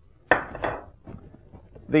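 Hard plastic clatter of a motorcycle helmet's just-removed visor being handled, with one sharp knock about a third of a second in, then quieter handling noise.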